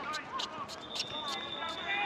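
Several short, sharp pops of tennis balls bouncing on a hard court, with faint distant voices and a thin high steady tone lasting about a second in the middle.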